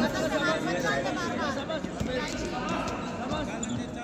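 Several people's voices shouting and talking over one another at a wrestling bout, with a single thud about two seconds in.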